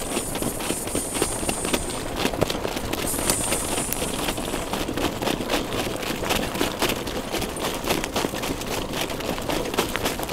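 Wind buffeting the microphone of a harness driver moving at speed, over a fast, uneven clatter of hoofbeats and the cart's rattle.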